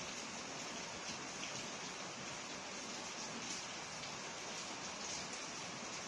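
Steady background hiss with a few faint small ticks.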